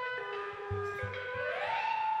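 Electronic synthesizer tones holding steady pitches, with a brief low pulse beneath about a second in. Near the end, one tone glides smoothly upward and holds at the higher pitch.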